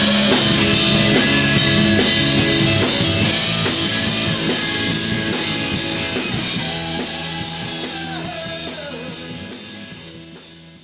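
Live rock band playing: drum kit, electric guitar and bass together with a steady beat, fading out steadily over the second half.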